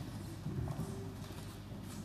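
Balalaika played softly, a few light plucked strokes on its strings ringing faintly in a large hall.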